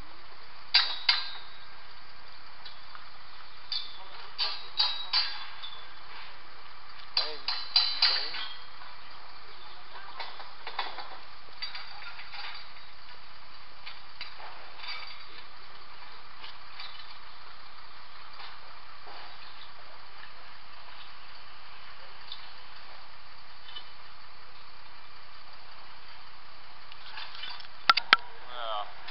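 Steel scaffold tubes and frames clinking and clanging against each other as they are handled and fitted together. There are loud metallic knocks in clusters in the first eight seconds, then sparser, lighter clicks.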